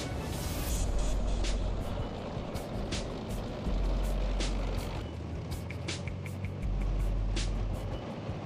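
Tracked armoured vehicles driving past: a steady low engine rumble with scattered sharp clicks, under background music.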